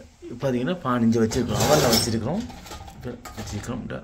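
A voice talking, with a brief noisy scrape or clatter of dishes and pans in the middle, as a baking tray of burger buns is handled in the open oven.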